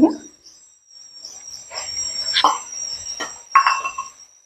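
Chopped tomatoes tipped from a plastic bowl into a hot nonstick wok of frying vegetables: a soft sizzle from about halfway in, broken by a few sharp knocks of a spoon against the bowl and pan. A steady high-pitched whine runs underneath throughout.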